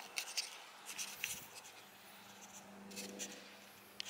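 Faint footsteps scuffing and crunching on gritty, cracked pavement, heard as scattered scratchy ticks over a low steady hum.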